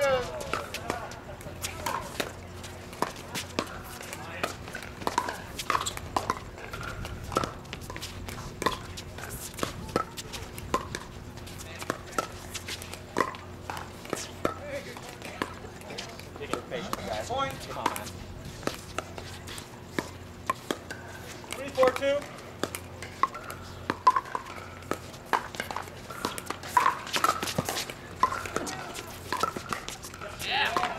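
Pickleball paddles striking a hard plastic ball in doubles rallies: a long run of sharp pops at irregular spacing, with voices murmuring behind.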